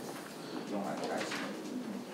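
Sheets of paper being shuffled and handled on a desk, a soft rustling, over a faint low-pitched sound in the background.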